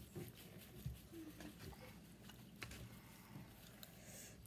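Near silence: room tone with a few faint clicks and small noises of hands pulling apart fried chicken and eating at the table, about one second in, again after two and a half seconds, and just before four seconds.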